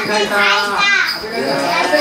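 Young children's voices, several at once, calling out and chattering in high, rising and falling tones.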